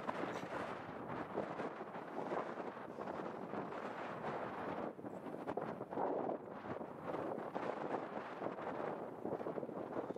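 Wind over open ground: a faint, steady rushing noise.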